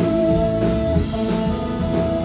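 Live rock band playing, electric guitar to the fore over drums and keyboards, with one long note held through.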